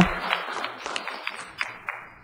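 Brief scattered applause from the audience, fading out over about two seconds.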